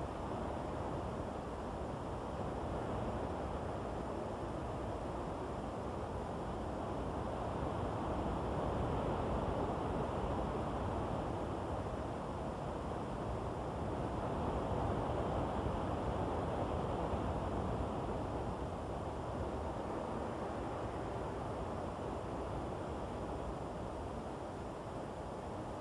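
Wind blowing steadily as a rushing noise, swelling and easing slightly in slow gusts.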